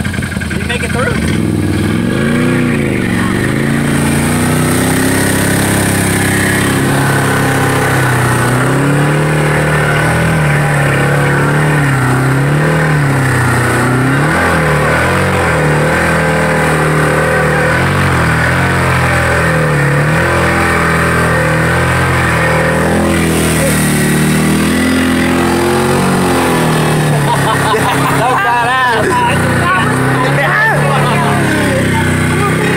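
The V-twin engine of a Can-Am Maverick 1000R side-by-side running under way, its revs rising and falling over and over as it is driven.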